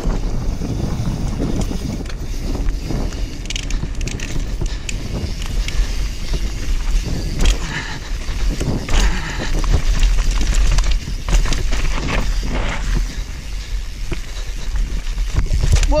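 YT Capra enduro mountain bike descending a rocky dirt trail at speed: tyres crunching over dirt and rocks, with frequent knocks and rattles from the bike, under a steady rumble of wind on the camera's microphone.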